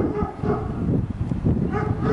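Wind rumbling on the microphone, with two short high-pitched calls, one at the start and one near the end.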